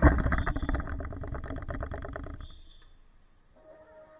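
Loud rustling and scraping right on the microphone, like clothing brushing against the camera as someone passes close by. It starts suddenly and dies away over about two and a half seconds.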